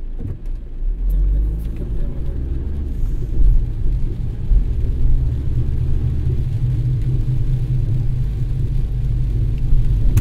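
Car pulling away from a stop onto a wet road, heard from inside the cabin: a low engine and road rumble that rises about a second in and then holds steady.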